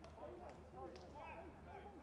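Faint, distant voices calling out, with two faint knocks about half a second apart, over a low steady hum.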